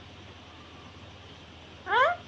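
Low room hiss, then near the end one short rising call from an Alexandrine parakeet.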